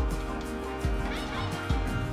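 Background music with a steady beat, a deep bass thump a little less than once a second.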